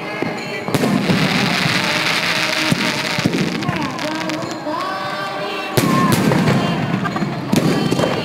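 Fireworks going off: rockets launching and bursting in the air with dense crackling. The crackling starts about a second in, and a louder burst comes near the six-second mark, followed by another just before the end.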